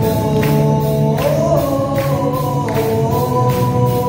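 Live band playing amplified music on electric guitars, drums and keyboard, the drums keeping a steady beat of about two strokes a second. A held melody line enters about a second in.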